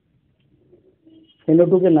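A bird cooing softly in low, steady notes, then a man's voice speaking briefly from about one and a half seconds in.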